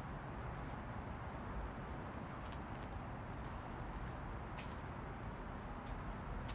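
Steady outdoor background noise with a low rumble, and a few faint clicks about two and a half seconds in and again near the end.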